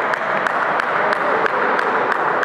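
Table tennis balls clicking off bats and tables across a busy hall, several sharp irregular clicks a second from different tables, over a steady hall hubbub.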